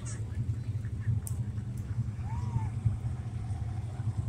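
Hobby stock race cars' engines running on a dirt oval at a distance, a steady low rumble.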